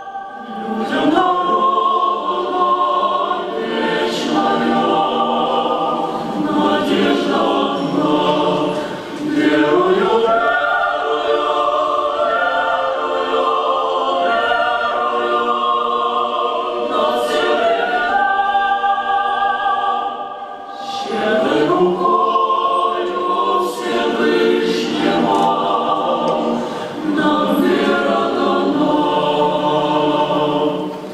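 Large mixed choir of women's and men's voices singing a cappella in long sustained phrases, with brief breaks between phrases about ten and twenty-one seconds in.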